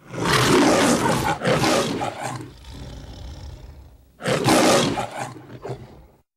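The MGM studio logo's lion roar: three loud roars, two close together at the start and the third about four seconds in, with a quieter growl between them.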